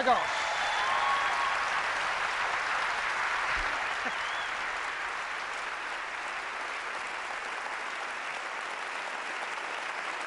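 A large audience applauding, loudest at the start and easing slightly as it goes on.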